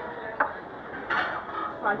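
Plates and metal serving utensils clinking, with a sharp click about half a second in and a short clatter just after a second in, over a murmur of voices.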